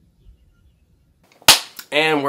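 Quiet for the first second, then a single sharp crack about one and a half seconds in, with a man's voice starting just after it.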